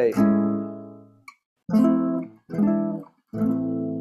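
Classical guitar strumming the A chord that resolves an F major 7 to E7 cadence. It rings and fades over about a second, then three more chords follow about a second apart, and the last is left ringing.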